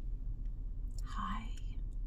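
A brief whispered vocal sound from a woman about a second in, over a steady low rumble in a car's cabin.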